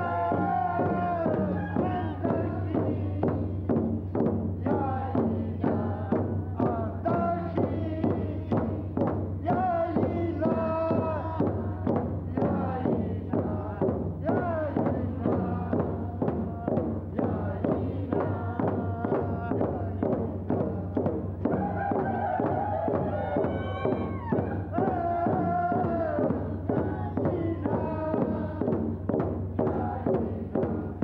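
A group of men and women singing a Tlingit potlatch welcome-and-goodbye song in unison, over a steady, evenly paced drumbeat.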